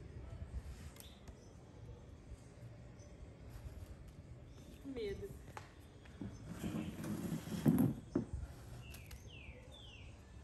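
A loud rush of air noise from about six and a half to eight seconds in, with a brief soft voice sound before it and a few short high squeaks near the end.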